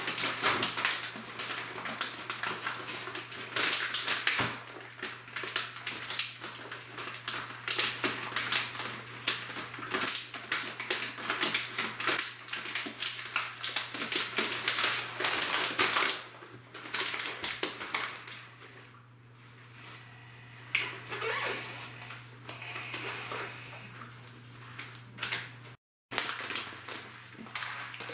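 Mylar foil bags crinkling and rustling as they are handled, in dense irregular crackles for about sixteen seconds, then sparser and quieter.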